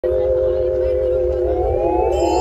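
Siren-like electronic tone played over a club sound system: a held cluster of tones that begins warbling up and down about one and a half seconds in, over a low bass rumble.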